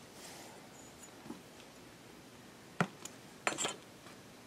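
Small handling taps of fingers and baked polymer clay pieces on a work surface over quiet room tone: one sharp tap nearly three seconds in, then a quick run of clicks.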